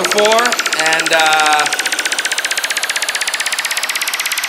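Psytrance build-up: a rapidly pulsing synth riser that slowly climbs in pitch, with a processed spoken vocal sample over the first second and a half.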